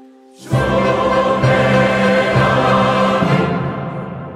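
Choir and chamber orchestra in 19th-century Catalan sacred music. After a held horn chord dies away, they enter together loudly about half a second in. The full sound breaks off after about three seconds, leaving the hall's reverberation.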